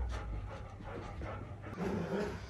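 Golden retriever panting softly.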